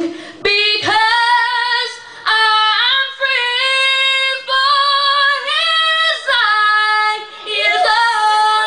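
A young male singer's high voice singing a gospel hymn unaccompanied, holding a run of long notes with vibrato and sliding up between them, with short breaths between phrases.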